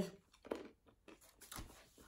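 A mostly quiet room with a few faint short clicks and soft rustles, the clearest about one and a half seconds in.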